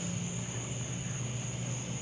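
Steady night ambience: a continuous high-pitched cricket chorus over a low steady hum, with no distinct event.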